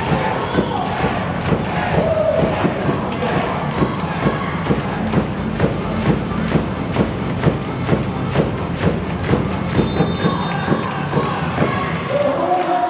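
Arena cheer music with a steady thumping beat, about two beats a second, over a crowd cheering.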